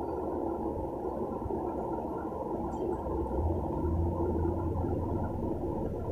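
Water pouring into an aluminium pressure-cooker pot full of cut tomatoes: a steady, low, muffled rushing, with a low hum joining about halfway through.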